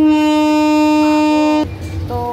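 Train horn sounding one long, steady note of about a second and a half, which cuts off suddenly.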